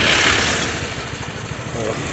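Motorcycle engine idling with a steady low pulse, with a loud rush of noise, like a vehicle passing close by, in the first half second.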